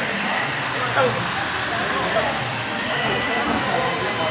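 Indistinct voices talking over a steady background noise.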